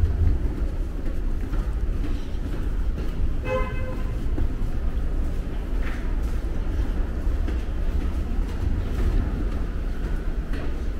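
Steady low rumble of a subway train, with a short horn toot about three and a half seconds in.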